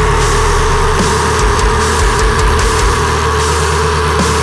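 A metalcore band playing a heavy section: distorted guitars, bass and drums, with a steady high note held over the top.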